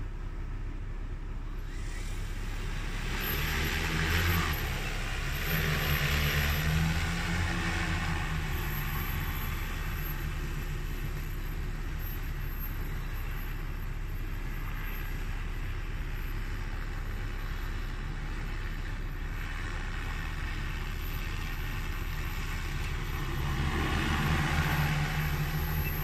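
Large multirotor crop-spraying drone's propellers and motors humming. The hum swells a couple of seconds in, runs steadily through the middle, and grows louder again near the end.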